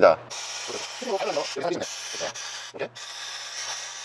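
Steady hiss of a steam machine's jet played onto a windshield to heat old window tint film and soften its adhesive for peeling, with short snatches of voice breaking in.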